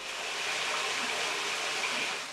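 Water running from a bathtub mixer tap into the tub: a steady rush that swells as the tap is opened.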